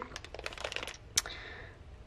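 Clear plastic packaging of a marker set crinkling with light clicks as it is handled and turned over, with one sharper click a little past a second in.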